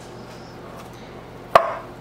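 A single sharp knock about one and a half seconds in, with a brief ringing tail: the metal muffin tin being bumped while cinnamon-roll dough is pressed into its cups.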